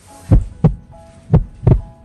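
Heartbeat sound effect: deep thumps in lub-dub pairs, about one pair a second.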